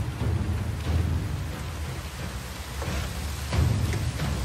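Cinematic trailer-style soundtrack: a deep, thunder-like rumble under a steady hiss, broken by a few heavy booming hits.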